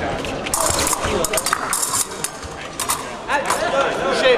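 Épée fencing bout: quick sharp clicks and taps of blade contact and footwork on the metal piste through the middle, with voices in a large hall. A voice rises shortly before the end, as a touch is scored.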